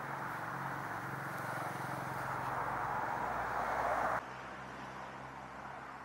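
A vehicle engine running steadily with a low hum under a rushing wash of noise. It grows louder, then drops abruptly about four seconds in to a fainter, steady running sound.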